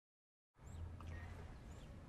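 Dead silence, then about half a second in a faint room tone begins: a low steady hum with a soft hiss and a few faint high chirps.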